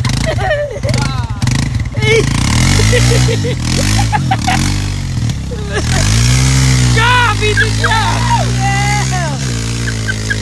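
ATV engine revving up and down several times as its tyres churn in deep mud, then held at higher revs as it pulls free. Shouting voices over the engine in the second half.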